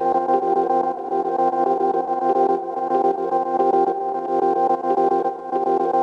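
Granular micro-loop of a Rhodes electric piano sample from a Chase Bliss MOOD pedal: a steady, sustained chord with a fast fluttering pulse, washed in reverb.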